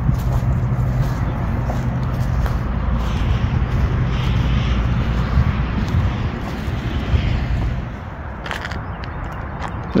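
A vehicle engine running steadily nearby, a low hum that drops away about eight seconds in.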